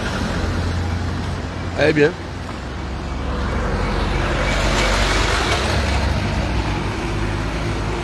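Pickup truck engine running close by with a low steady hum, under road noise that swells to a peak about five seconds in and then eases.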